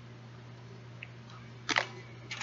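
A short rustle of an item being handled close to the microphone near the end, after a faint click about a second in, over a low steady hum.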